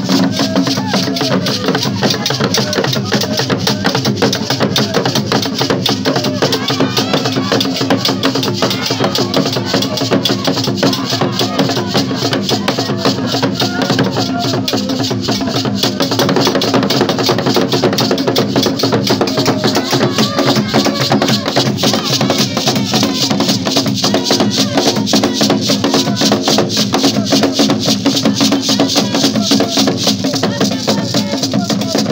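Traditional Ghanaian drum ensemble: wooden barrel drums struck with sticks and a beaded gourd rattle, playing a dense, unbroken rhythm, with voices over it. The sound gets a little louder about halfway through.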